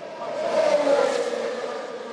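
Formula 1 car engine roaring, swelling to a peak about a second in, then fading a little as its pitch drops slightly.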